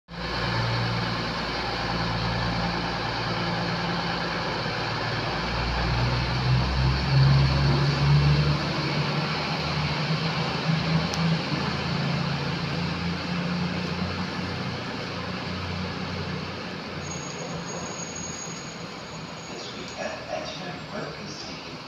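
Class 222 Meridian diesel-electric multiple unit departing, its underfloor Cummins diesel engines running under power with a steady low hum. The sound swells about six to eight seconds in, then slowly fades as the train draws away.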